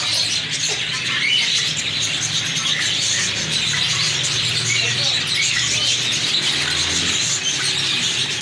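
A cageful of budgerigars chattering, with many overlapping chirps and tweets at once, over a steady low hum.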